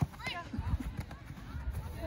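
A single sharp knock at the very start, then a short shouted call, over a low steady rumble: voices and play at a soccer match.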